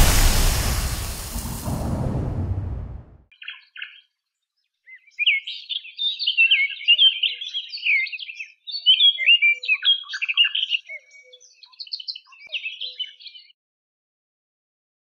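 A rush of noise fades out over the first three seconds. Then a small songbird chirps and twitters in quick, busy phrases from about five seconds in until just before the end.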